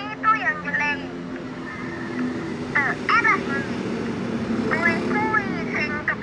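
Children's voices speaking in short high-pitched phrases, as in a quarrel, over a steady low engine hum that grows a little louder in the middle.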